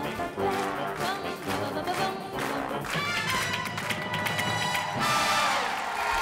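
Upbeat TV game-show jingle with brass and a steady beat. A studio audience cheers and applauds near the end.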